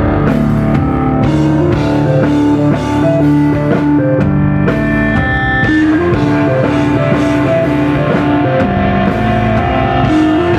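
Live rock band playing an instrumental passage, electric guitar over a drum kit, loud and steady.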